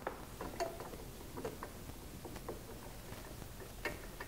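Faint, scattered small clicks and rustling of a UV steriliser lamp's plastic power connector being lined up with the lamp's pins by hand through a cloth, with a slightly sharper click near the end.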